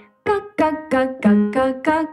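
A woman's voice singing short, detached "gug" syllables on separate pitches, about three notes a second, over piano accompaniment: a staccato vocal exercise for pitch accuracy.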